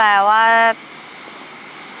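A young woman speaking a short phrase in Thai, then a faint steady background hum for the rest of the time.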